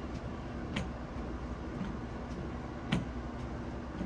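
Steady low background hum with a faint constant tone, broken by two brief clicks, one about a second in and another about three seconds in.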